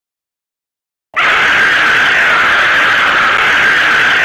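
A loud, harsh cartoon scream with no clear pitch, starting about a second in and held at an even level.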